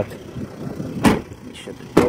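The driver door of a 2007 Jeep Grand Cherokee shut once, about a second in, a single sharp thud. Under it the truck's 3.0 turbo-diesel runs at idle with a low rumble.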